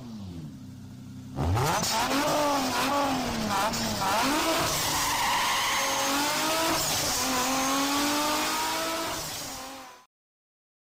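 Race car engine sound effect: a quieter falling rev, then about a second and a half in a loud burst of revving that climbs and drops again and again as through gear changes, rising steadily in pitch later on and fading out at the end.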